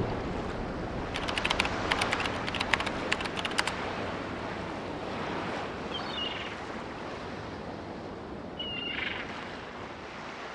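Sea ambience of waves and wind as a steady rushing bed. A quick run of sharp clicks comes in the first few seconds, and two short high calls come later.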